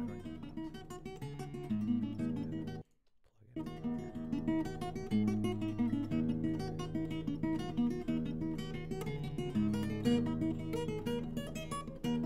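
Recorded fingerstyle acoustic guitar, a Seagull fitted with a K&K Trinity pickup, playing a Dorian, Celtic-sounding tune: plucked melody notes over ringing bass notes. The sound cuts out completely for about half a second around three seconds in, then resumes.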